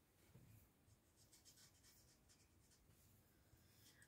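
Barely audible strokes of a Copic marker tip rubbing on a wooden skateboard deck while colouring in, a string of faint short scratches over room tone.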